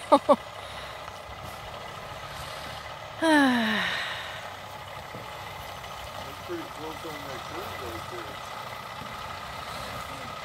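Diesel engine of a Hammar side-loader truck carrying a shipping container, running at a steady low hum as it creeps along a steep dirt driveway. About three seconds in, a person's voice gives a short exclamation that falls in pitch.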